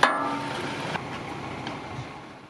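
A sharp metallic clang that rings briefly, followed by a couple of faint knocks.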